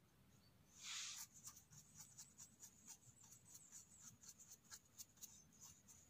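A bristle brush sweeping dirt off a freshly picked bolete mushroom, in faint, quick, scratchy strokes about four a second, with one longer, louder sweep about a second in.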